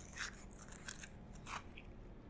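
Faint handling noises: three brief, soft crunchy clicks about two-thirds of a second apart as hands work a small handheld device at a table.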